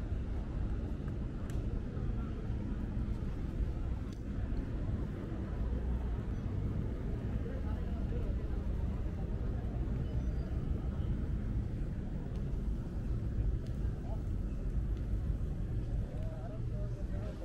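Busy pedestrian street ambience: a steady low rumble under the indistinct chatter of passersby.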